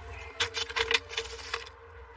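A quick run of light metallic clicks and clinks, from hands working at a copper gutter and its flashing, over a steady low hum.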